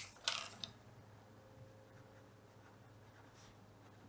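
A short rustle of paper being handled near the start, then faint scratching of a pencil writing on paper.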